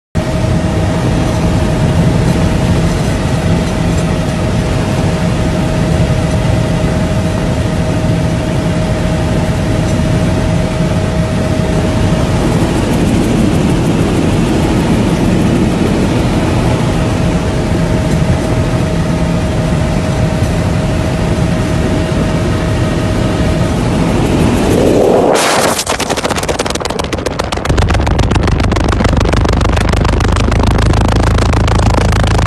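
Helicopter cabin noise: engine and rotor running steadily, with a constant whine over a low throb. About 25 seconds in, the phone falls out of the open window. The sound sweeps sharply up and gives way to loud, buffeting rush of wind as it tumbles.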